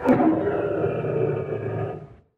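Lion roar sound effect that starts suddenly with a sharp hit and runs for about two seconds.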